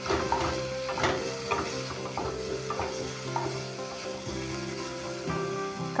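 Chopped onion and green chillies sizzling in hot oil in a non-stick kadhai while a wooden spatula stirs them, scraping the pan every second or so.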